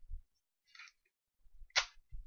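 Clear sticky tape and construction paper being handled: a soft knock at the start, a faint brief rustle, then a short sharp rasp of tape about two seconds in, the loudest sound.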